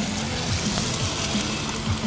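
Tyres of a Daewoo Lanos hatchback hissing through water on wet asphalt as the car swings close past through a slalom turn, the hiss strongest about midway. Music plays underneath.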